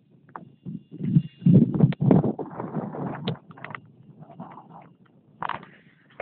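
Wind buffeting a phone's microphone in irregular low gusts, loudest between about one and three seconds in, with a few short knocks as the phone is handled.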